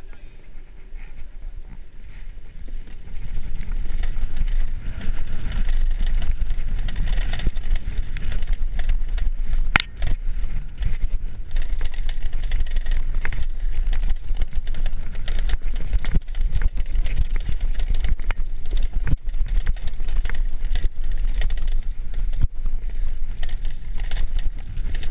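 Downhill mountain bike descending a rough dirt trail: a dense low rumble of wind buffeting the on-board camera microphone and tyres on dirt and gravel, with scattered sharp clicks and knocks from the bike over bumps. The noise grows louder about three seconds in as the bike picks up speed.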